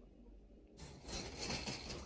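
Rubbing and rustling against a wire pet cage, starting a little under a second in and going on unevenly.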